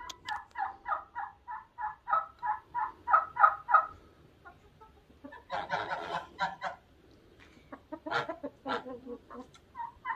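Barnyard chickens clucking in a steady repeated series, about four calls a second, for the first few seconds. About halfway through comes a short rapid rattling burst, typical of a turkey gobble, followed by more scattered clucks.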